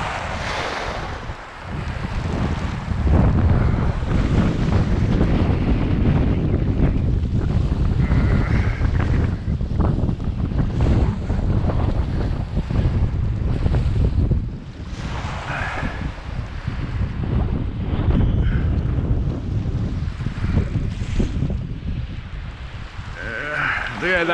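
Strong gusty wind buffeting the microphone in a heavy low rumble that rises and falls, with small waves lapping on a gravel shore underneath.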